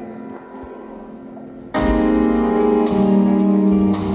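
Live rock band: a sustained keyboard chord fades, then a little under two seconds in the full band comes in at once, loud, with regular cymbal strokes over the keyboard and guitar.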